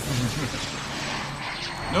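Animated sci-fi spaceship engine noise from a TV soundtrack, a steady rushing roar as the ship is shot and goes down, with a thin high whine coming in after about a second and a half.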